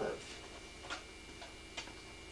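A few faint, light ticks, about four in two seconds at uneven spacing, over a steady low room hum.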